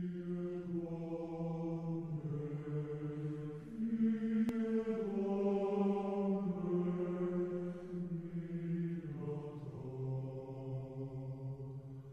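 Slow chant sung by men's voices in the manner of Orthodox church chant, on long held notes that change pitch every few seconds.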